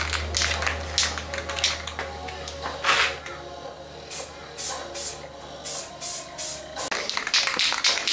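Aerosol spray can of high-build plastic primer filler hissing in several short bursts as primer goes onto a plastic bumper, starting about four seconds in. Before that come a run of rapid clicks and one louder burst, with a low steady hum underneath.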